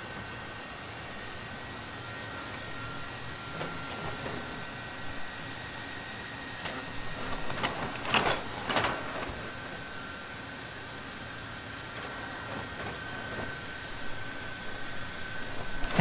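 Boston Dynamics' electric Atlas humanoid robot moving: a steady mechanical whine from its electric actuators over a hiss of room noise, with a few louder knocks of its feet and joints about seven to nine seconds in as it walks.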